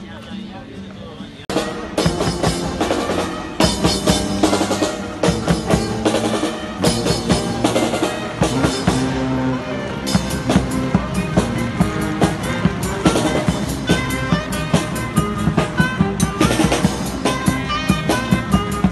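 A street brass band playing an upbeat tune, horns over drums with a strong, steady beat. It comes in about a second and a half in and grows louder a couple of seconds later.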